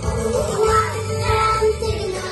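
A children's song: young voices singing a melody over a steady beat.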